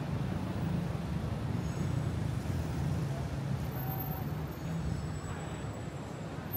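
Street traffic: a steady low rumble of car engines from a slow-moving line of cars and taxis alongside.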